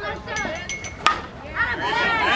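A pitched baseball lands with one sharp smack about a second in. Spectators' voices call faintly around it.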